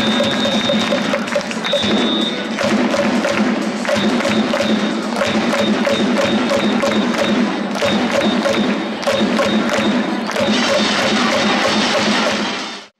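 Rhythmic music with a steady percussive beat and short repeating tones, played over a baseball stadium's sound system.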